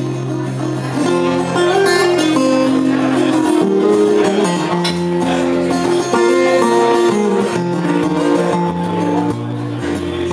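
Acoustic guitar played solo, an instrumental passage with no singing: low bass notes ringing under a line of picked higher notes.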